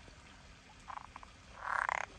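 Green water frogs croaking in a pond: a few short croaks about a second in, then a longer, louder rattling croak near the end.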